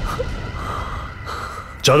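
A low rumbling dramatic sound-effect hit from a TV-serial soundtrack, with its tail running on under a faint steady drone. Near the end a person starts to speak.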